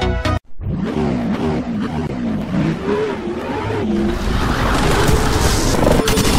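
Electronic music cuts off abruptly, then a car tyre-skid and engine-revving sound effect builds in loudness, with wavering, gliding squeal over a noisy rush, as in a drifting-car logo-reveal intro.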